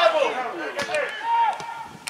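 Men's shouts on an open football pitch: a long yell falling away at the start, then scattered short calls, with a sharp knock a little under a second in.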